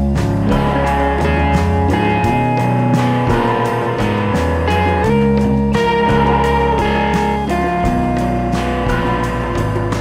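Indie rock song, instrumental passage: electric guitar playing over drums with a steady beat.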